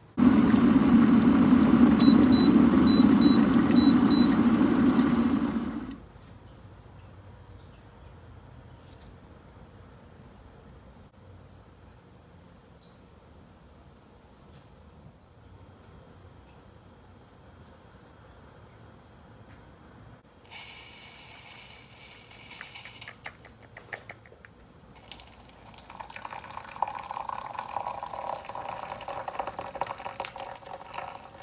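A loud, steady rushing noise for about the first six seconds, with a few short high beeps in it. Near the end, after some clicks and knocks, water is poured into a ceramic mug holding a tea bag.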